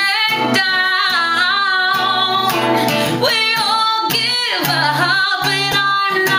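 A woman singing solo with held, wavering notes, accompanied by her own acoustic guitar.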